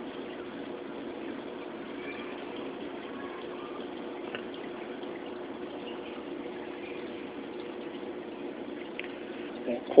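Reef aquarium's water circulation running: a steady rush of moving, bubbling water with a low, even pump hum.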